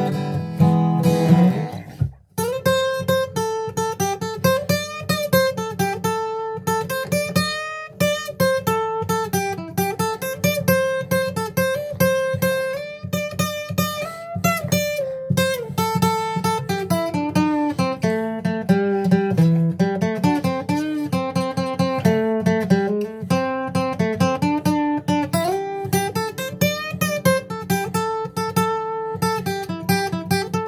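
Acoustic guitar playing an instrumental blues break: picked single-note melody lines that climb and fall over sustained low bass notes, with a brief stop about two seconds in.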